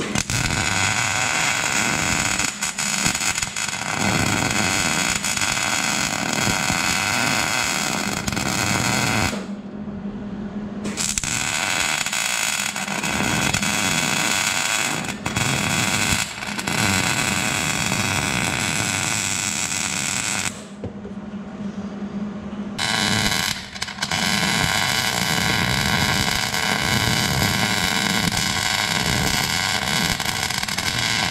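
Wire-feed welder arc crackling steadily as it lays weld on steel, in three runs broken by two short pauses, about nine and twenty seconds in.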